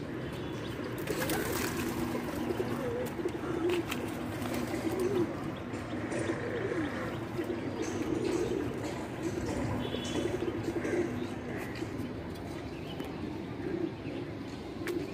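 Several caged domestic pigeons cooing at once, their low calls overlapping without a break.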